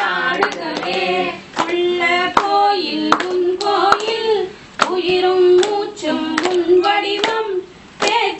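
Group of women singing a devotional song together, clapping their hands in a steady beat.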